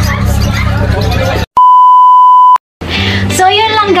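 A single loud, steady, one-pitch electronic beep lasting about a second, set between two short dead silences about halfway through, marking an edit. Before it comes chatter over background music; after it, a man and a woman talking over music.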